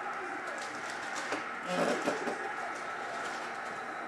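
Quiet room noise with a few faint clicks of cards being handled, and a brief low hum-like voice sound about two seconds in.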